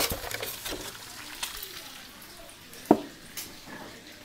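A foam egg carton being handled as an egg is taken out: a sharp click right at the start, light crackling and tapping over the next second, and another sharp click about three seconds in.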